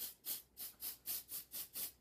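Aerosol nail dry spray hissing out of the can in quick short bursts, about four a second, misted over freshly painted fingernails to dry the polish.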